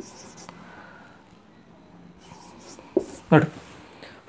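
Marker writing on a whiteboard: faint, high, scratchy strokes in the first half-second and again from about two and a half seconds in, then a single tap at about three seconds.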